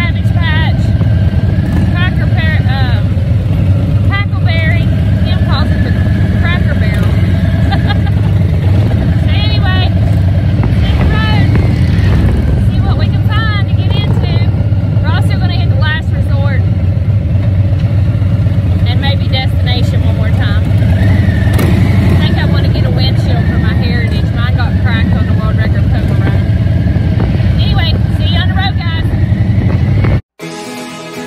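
Harley-Davidson V-twin motorcycle engine running steadily and loudly under way. Short wavering higher-pitched sounds come and go above it.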